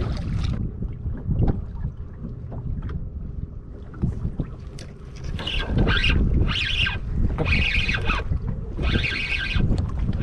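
Spinning reel being cranked to reel in a hooked fish. Its gears whir in short runs about once a second during the second half, over steady wind on the microphone.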